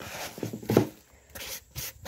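A hand rubbing coarse salt into a slab of raw beef flank in a plastic bowl: gritty scraping in several short strokes.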